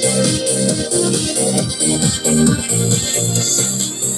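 Electronic dance music with a steady, repeating bass beat, played loud through an LG XBOOM portable speaker.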